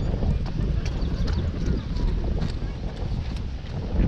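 Running footsteps on wet asphalt as a runner passes: a string of short, sharp footfalls over a steady low rumble.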